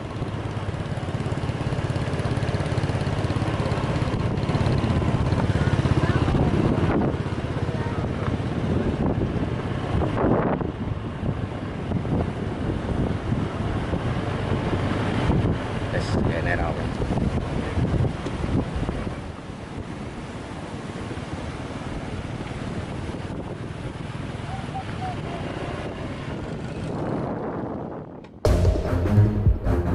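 Wind buffeting the microphone over the wash of waves, with small motorcycle engines running nearby. The rumble is heaviest in the first several seconds and eases a little after about nineteen seconds.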